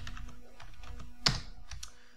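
Typing on a computer keyboard: a few scattered keystrokes, the loudest key click a little past halfway, over a faint steady hum.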